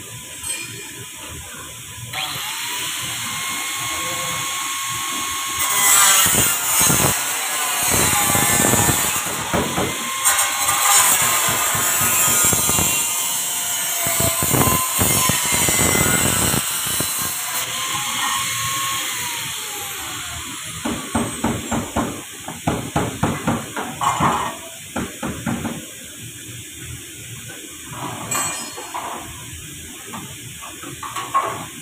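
Body-shop tool noise: a power tool runs for long stretches, then a quick run of short knocks follows.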